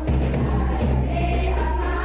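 Music with a group of voices singing a held, flowing melody, over a steady low hum.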